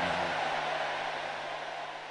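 Steady hiss-like background noise with a low steady hum, fading gradually.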